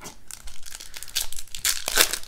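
Foil wrapper of a 2019 Bowman baseball card pack being torn open and crinkled by hand: irregular crackling that grows louder in the second half.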